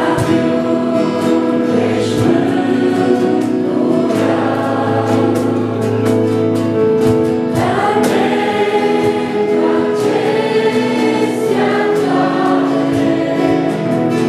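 Two female voices singing a Christian song in Romanian as a duet into microphones, accompanied by an electronic keyboard. The music runs on at an even level.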